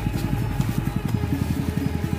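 Small engine of a rice threshing machine running steadily, with a rapid even beat.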